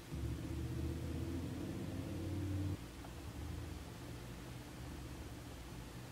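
A low steady hum that comes in at once and cuts off suddenly a little under three seconds in, leaving faint steady background noise.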